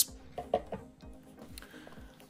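Quiet background music, with one light knock about half a second in from the cardboard packaging being handled.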